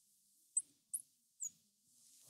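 Marker squeaking on a glass lightboard while writing, three short high squeaks about half a second apart.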